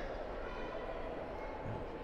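Steady background hum of a large indoor shopping mall, with no distinct events.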